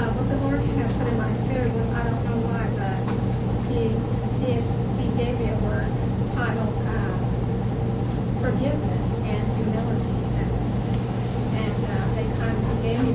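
A woman speaking, her voice faint beneath a loud, steady low hum.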